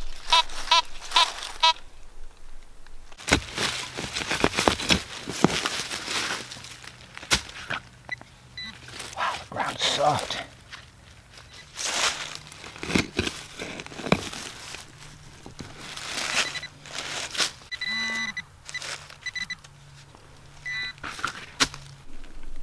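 Fisher F19 metal detector beeping rapidly on a buried target, then a hand shovel digging into leaf litter and forest soil in several bursts of scraping strokes, with a few more short electronic beeps near the end.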